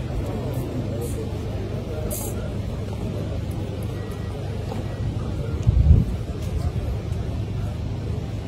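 Steady low rumble with indistinct background voices, and one brief, louder low thud just before six seconds in.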